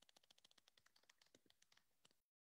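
Near silence, with a scatter of very faint clicks.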